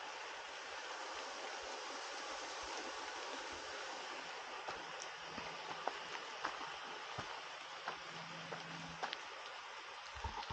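Light rain falling in the forest: a steady hiss with scattered light drop ticks that come more often in the second half.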